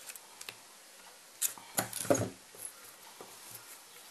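Small metal clicks and handling noises as two pairs of jewellery pliers grip and prise open a small metal crocodile clasp, a few scattered clicks with a louder cluster about two seconds in.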